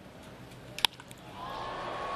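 Single sharp crack of a wooden baseball bat squarely meeting a pitch a little under a second in, the ball lined for a base hit. Stadium crowd noise swells just after.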